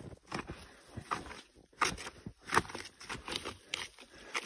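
Ski pole and skis crunching and scraping in deep powder snow: a series of short, irregular crunches as the snow is probed over a buried trap.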